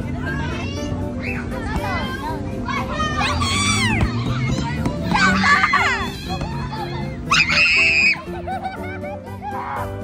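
Children playing and shouting, with a loud high scream about three seconds in and another about seven seconds in, over music playing in the background.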